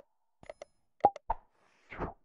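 Sound effects of an animated subscribe-button graphic: a quick run of short mouse clicks and pops, about five in under a second, as the cursor clicks the subscribe and like buttons, then a brief whoosh near the end as the graphic closes.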